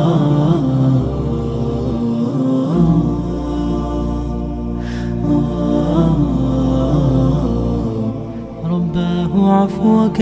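Nasheed-style vocal music: layered voices chanting and humming held notes without clear words over a low steady drone. The texture changes near the end.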